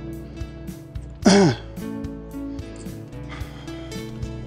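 Background acoustic guitar music with plucked notes throughout. About a second in, a person clears their throat once, loudly and briefly.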